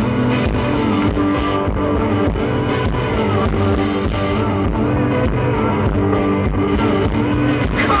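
Live rock band playing an instrumental passage between verses: strummed electric guitar chords over a drum kit with cymbals. The lead vocal comes back in right at the end.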